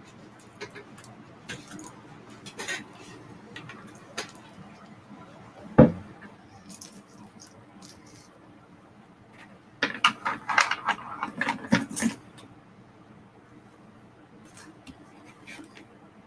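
Small hard objects being handled: scattered clicks, one loud thump about six seconds in, and a run of clattering clicks between about ten and twelve seconds, over a faint steady hum.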